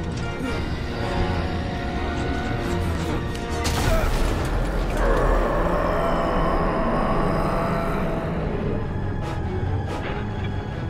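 Dark, tense orchestral film score, with a loud sharp hit about four seconds in.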